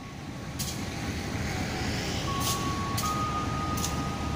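Low rumble of an approaching GE U18C (CC 201) diesel-electric locomotive, growing a little louder over the first second or so. A thin steady tone comes in about two seconds in and steps up in pitch a second later, with a few faint sharp ticks.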